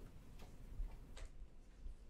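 Faint footsteps on a hard floor: a few light, separate clicks about a second apart over a low room rumble.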